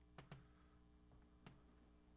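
Near silence with three faint taps of chalk on a blackboard as a word is written, two close together near the start and one in the middle.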